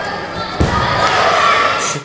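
A sambo wrestler thrown onto the mat: one heavy thud about half a second in, over the hubbub of voices in the sports hall, which grows louder after the landing.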